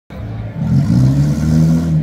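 Car engine revving under load, growing louder and rising a little in pitch about half a second in, then holding steady.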